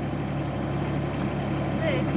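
Engine of a Thwaites mini site dumper, a small diesel, running steadily at low revs as the dumper creeps forward in gear. A faint voice starts near the end.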